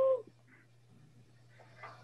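A short, high-pitched vocal sound lasting about half a second, its pitch rising slightly and falling, right at the start. Then near silence over a faint steady low hum.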